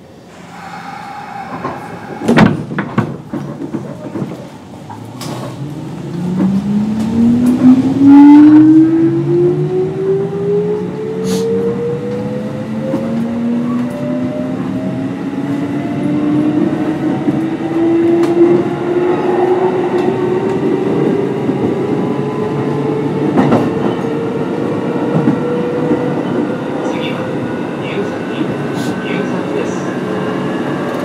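Kintetsu 8800 series electric train (field phase control) pulling away and accelerating. A few sharp clicks and knocks come in the first seconds. Then the traction motor whine rises in pitch, first quickly from about six to nine seconds in, then in a second, slower climb that keeps rising to the end.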